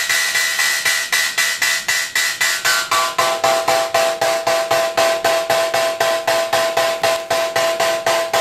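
Synthesized hi-hat from a Mutable Instruments Plaits module, ticking in an even pattern of about five hits a second. Its ringing tone steps down in pitch about three seconds in as the voice's settings are changed, giving a lower, more metallic hi-hat.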